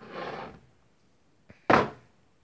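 Kitchen cupboard door being handled: a short rustling scrape at the start, then a faint click and a sharp knock near the end.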